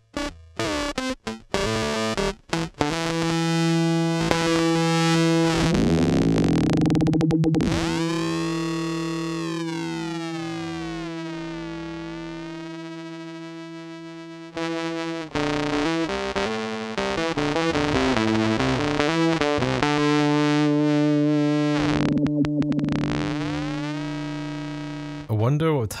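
Electric guitar played through a Eurorack modular effects rack, its filter modulated by a Make Noise Maths envelope cycling at audio rate, which gives the guitar a distorted, crushing sound. A few short choppy strums open it, then two long held notes each ring and slowly fade, with overtones sweeping up and down around them.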